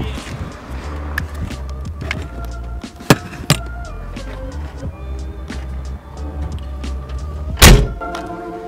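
Background music over a car trunk being used. Two sharp knocks come a few seconds in as things are handled, and the trunk lid is slammed shut just before the end, the loudest sound.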